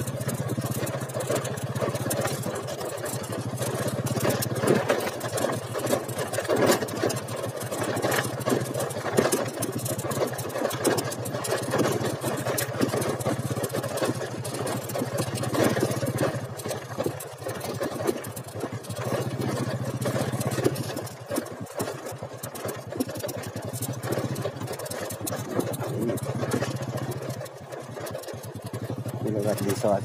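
Motorcycle engine running at a steady pace while riding over a rough dirt track, with wind and road noise on the microphone.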